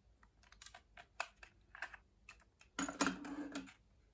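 Faint plastic clicks and light handling noises of a Sony Walkman WM-F10 cassette player being picked up and worked by hand, with a louder rubbing or scraping sound lasting under a second about three seconds in.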